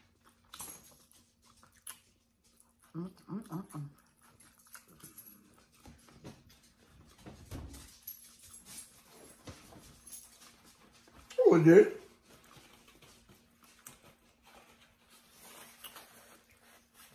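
A pet dog vocalising: a quick run of four short sounds about three seconds in, then one louder, longer call about two-thirds of the way through.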